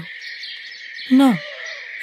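A steady background layer of chirring insects, with a character's voice crying out a single drawn-out, falling "No" about a second in.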